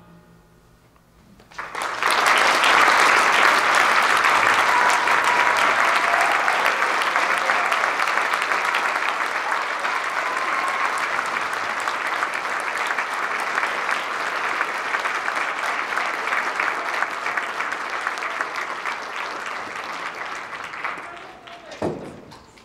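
Auditorium audience applauding at the end of a concert band piece: after a brief hush the clapping breaks out about two seconds in, holds steady, and dies away near the end.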